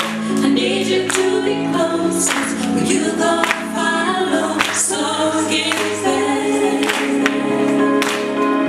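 A woman singing live into a microphone over a full instrumental backing track with a steady beat, holding long notes.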